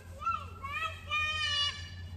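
A young girl's high-pitched voice yelling while she plays, a short call followed by a longer drawn-out one that steps up in pitch, over a steady low hum.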